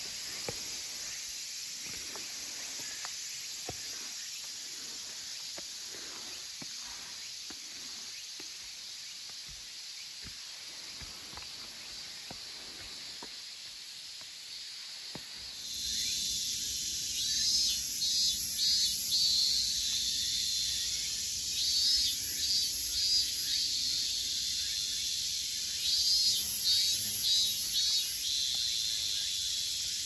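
Cicadas singing in a summer forest, a steady high shrill. About halfway through it gets suddenly louder, with repeated pulsing calls.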